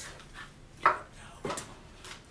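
Items being handled and set down on a tabletop: a sharp knock about a second in and a softer one shortly after.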